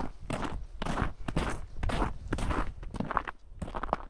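Footsteps on snow-covered ground, about two steps a second, each step a short scrunch.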